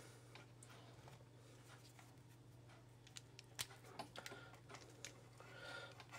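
Near silence with a steady low hum and a few faint small clicks, mostly in the second half, from hands handling a wire end, a plastic insulated ferrule and a crimping tool as the ferrule is readied for crimping.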